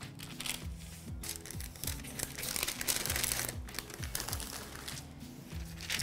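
Paper crinkling and rustling under hand handling, loudest from about two to three and a half seconds in, over background music with a steady beat.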